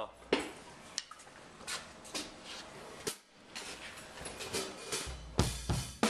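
Ellis Drum Co. custom drum kit with maple, walnut and cedar inlay shells being played with sticks: scattered single strokes on the drums and cymbals, then heavier bass drum and snare hits in the last second.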